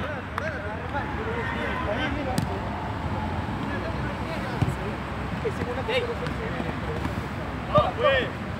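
Players' voices calling across an outdoor football pitch, heard from a distance over a steady background hiss, with a few sharp knocks of the ball being kicked.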